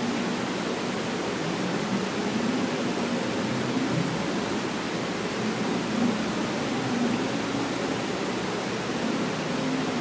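Steady hiss with a faint low hum: the background noise of an open microphone in a pause between words.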